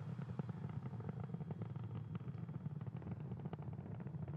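Falcon 9 first stage's nine Merlin 1D engines heard from the ground as the rocket climbs: a steady low rumble with dense crackling.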